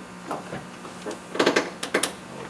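A quick flurry of sharp clicks and rustles about a second and a half in, the sound of small objects or papers being handled close to a table microphone, over a faint steady room hum.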